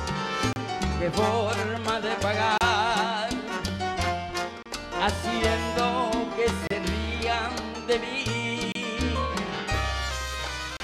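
Live salsa band playing a bass line of steady held notes, with a wavering sustained melody over it.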